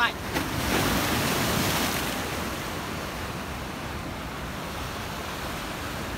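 Sea surf washing against a concrete tetrapod breakwater, one wave surging up loudly about a second in and then settling into a steady wash, with strong wind buffeting the microphone.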